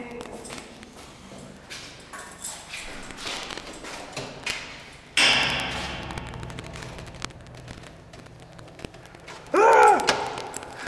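A heavy stairwell door opening with a sudden loud metallic clunk about five seconds in, ringing and echoing in the hard-walled stairwell, among scattered light taps of steps. A short voice sound comes near the end.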